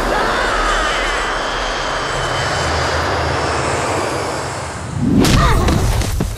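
Film fight-scene sound effects: a steady rushing noise, then a sharp hit with a whoosh about five seconds in.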